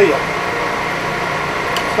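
Steady machine hum with an even whir from a running electric motor, with no change in pitch or level.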